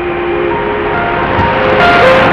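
Shortwave AM broadcast on 6115 kHz received by a TEF6686 tuner: a slow run of sustained notes stepping in pitch over steady static, with a sharp burst of crackle near the end.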